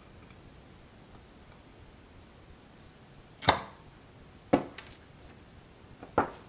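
Two sharp clicks of small metal items set down on a hard surface, about a second apart, the second followed by a fainter tick; otherwise quiet room tone.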